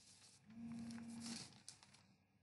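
A faint, steady voiced hum from a person, lasting about a second, with a few light clicks around it.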